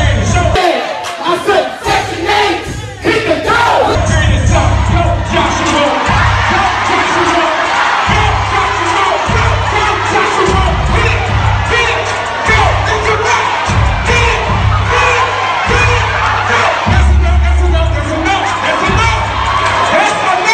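Audience cheering and shouting over loud music with a heavy bass beat that pulses on and off.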